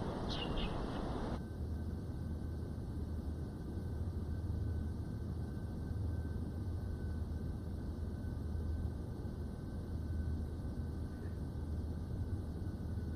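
Outdoor ambience with a couple of short high bird chirps under half a second in. About a second and a half in it switches abruptly to quiet indoor room tone with a low steady hum.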